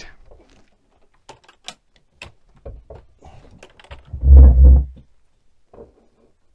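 Small clicks and light knocks of a guitar cable's jack plug being handled and pulled out, then a loud, low thump lasting about half a second, about four seconds in.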